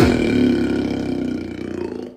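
A beatboxer holds one long, low, buzzing vocal bass note. It fades slowly over about two seconds and then cuts off.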